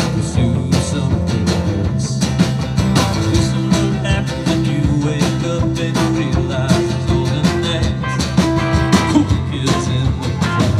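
Live rock-and-roll band playing a song: electric guitars, electric bass and drums, with a steady beat.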